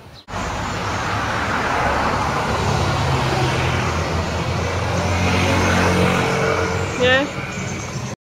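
Street traffic with a motor vehicle running close by, its engine note rising quickly about seven seconds in.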